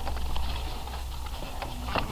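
Faint, irregular clicking and scraping of plastic vacuum lines being worked loose by hand and with a tool at an engine's intake manifold; the lines are dried on and have to be wiggled free. A steady low hum runs underneath.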